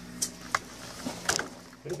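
A few sharp clicks and knocks, about three, as a wheel is taken off a bench grinder and handled, over a steady low hum.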